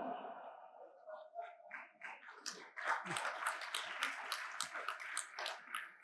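Audience laughter giving way to a round of applause; the clapping is densest in the middle and dies away just before speech resumes.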